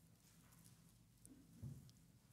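Near silence: room tone, with a faint soft thump about three-quarters of the way in.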